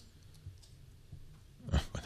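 Quiet room tone with a couple of faint, short clicks, then a man's voice says 'Oh' near the end.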